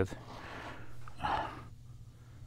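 A man's audible breathing: a long exhale, then a short, sharper breath just over a second in.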